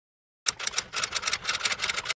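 A short burst of rapid, uneven clicking, like a typewriter sound effect, starting about half a second in and cutting off sharply after about a second and a half.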